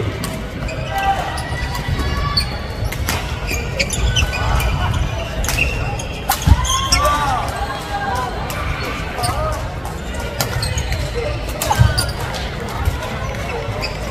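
Badminton play in a large gym: repeated sharp racket strikes on shuttlecocks and footfalls on the wooden court, over echoing voices and chatter from around the hall.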